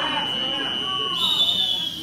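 Timer buzzer at the end of the wrestling period: a steady high tone, joined about a second in by a louder, slightly higher tone, both stopping together at the end.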